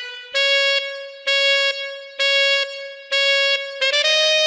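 A brassy horn sounding four short blasts on one note, about one a second, each dying away in an echo, with a slightly higher note starting near the end.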